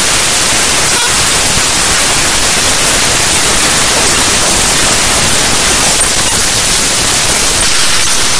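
Loud, steady harsh static noise with no tune or beat, its hiss strongest in the high range: a raw-data glitch track, computer data played back as sound.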